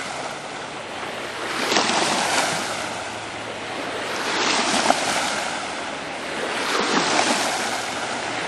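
Rushing noise of lake water washing near the shore and wind on the microphone, swelling and fading about every two to three seconds. No clear engine note comes through from the distant boat.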